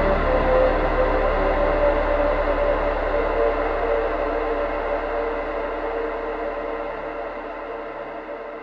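Ambient future garage track fading out at its end: sustained, shimmering synth pad chords over a deep bass, with no beat, getting steadily quieter.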